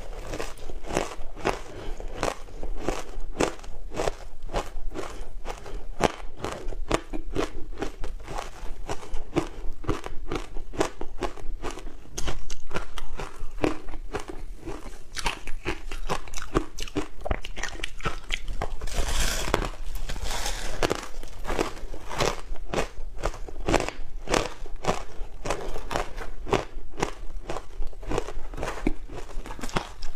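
Close-miked crunching and chewing of ice coated in dry matcha powder: a dense, continuous run of crisp crunches, with a louder stretch of bites about two-thirds of the way through.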